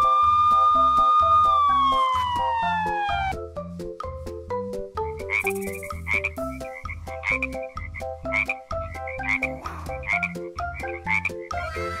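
Frog croaking sound effects, repeated short calls from about five seconds in, over children's background music with a steady beat. Early on, a long whistle-like tone glides down and stops about three seconds in.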